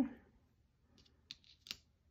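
A few short, light clicks in quick succession from a thin metal cutting die and card stock being handled and set down on a craft mat.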